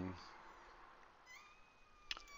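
Mostly quiet, with a faint, high-pitched, drawn-out whine in the last half-second.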